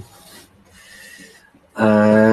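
A man's voice: soft breathy noise, then near the end a long, steady drawn-out hesitation sound, "yyy".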